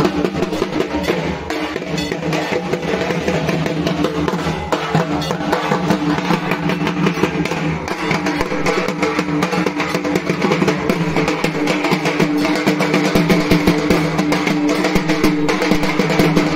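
Several dhak drums, large Bengali barrel drums struck with thin sticks, played together in a fast, dense, unbroken rhythm.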